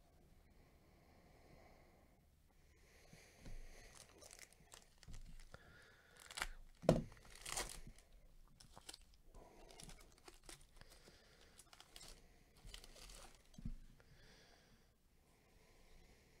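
A foil trading-card pack wrapper torn open and crumpled: a string of crinkly rips and rustles, the loudest about seven seconds in.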